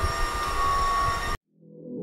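Steady fan noise with a few high whining tones from a room full of running cryptocurrency mining rigs, cut off abruptly a little over a second in. Soft music then fades in near the end.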